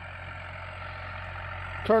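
Case CVX tractor engine running, a steady low drone that grows slightly louder toward the end.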